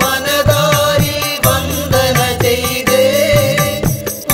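Malayalam Hindu devotional song music: a held, wavering melody line over regular percussion strokes and a repeating bass figure.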